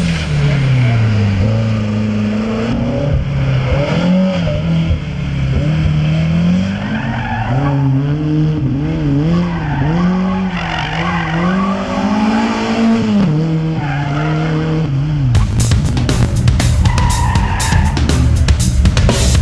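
Slalom racing car's engine revving hard, its pitch rising and falling again and again as the car brakes and accelerates between cones, with tyre squeal. About fifteen seconds in the engine note drops away and a rapid run of sharp crackling knocks takes over.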